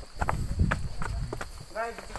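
Footsteps on a rocky trail, a few irregular knocks over low rumbling handling noise from a phone held by someone walking; a man speaks one word near the end.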